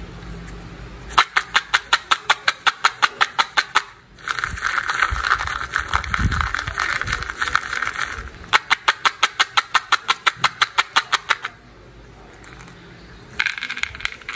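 Small candy-coated chocolates rattling against the inside of a plastic cup as a finger stirs them, in two runs of even clicks at about five a second with a denser rattle between. Near the end the candies start to pour out onto a plastic plate.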